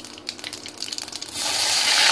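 Mustard seeds crackling in hot oil in a steel pan. About one and a half seconds in, a loud, steady sizzle starts as the ground chutney paste goes into the oil.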